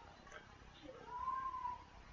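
A faint cat meow: one drawn-out call that rises and falls in pitch, lasting under a second, about halfway through.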